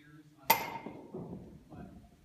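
A metal baseball bat striking a ball off a batting tee: one sharp ping about half a second in, ringing briefly as it fades.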